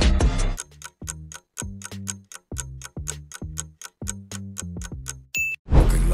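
A quiz countdown timer sound effect: a rapid, even clock-style tick-tock. It starts as an instrumental music clip cuts off about half a second in and ends in a single short ding. K-pop music then comes back in loudly just before the end.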